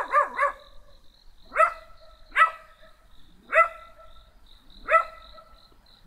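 A dog barking: a quick run of yaps at the start, then four single barks spaced about a second apart.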